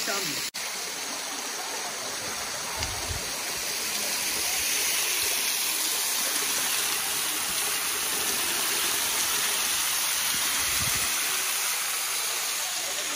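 Waterfall: water falling down a rock face into a pool, a steady rushing hiss that grows a little louder about four seconds in.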